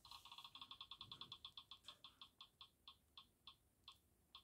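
A spin-the-wheel app on a tablet plays its faint ticking sound through the tablet speaker as the wheel spins. Rapid ticks, about ten a second at first, slow steadily to under two a second near the end as the wheel winds down.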